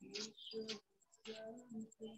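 Faint bird cooing in four or five short, steady-pitched notes.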